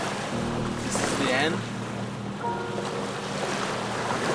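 Steady wind and surf noise on a beach, with soft background music holding a few sustained notes, one chord in the first half and a higher one later.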